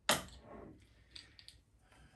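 Crown cap prised off a glass beer bottle with a bottle opener: one sharp pop as the cap lets go, trailing off briefly, followed by a few faint light clicks.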